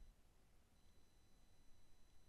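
Near silence: faint room tone with a thin steady high whine.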